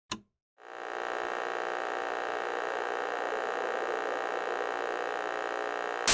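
A brief click, then about half a second in a steady electronic drone with many overtones begins and holds level without change.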